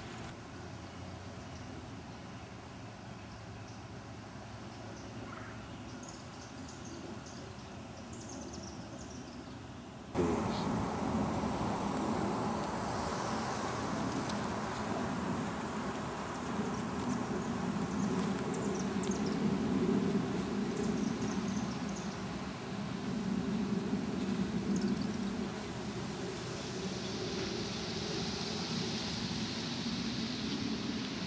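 Honey bees buzzing in flight close by, a low hum that swells and fades every few seconds. It starts abruptly about a third of the way in, after a quieter stretch.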